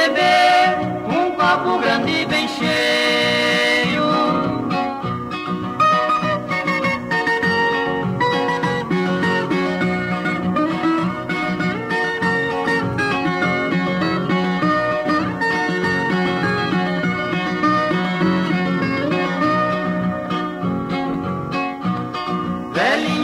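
Instrumental break in a Brazilian sertanejo cururu song: acoustic guitars playing between the sung verses, at a steady level.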